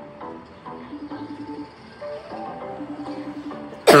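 FaceTime call ringtone on a phone: a short melodic phrase of pitched notes that plays through twice and stops near the end as the call is answered.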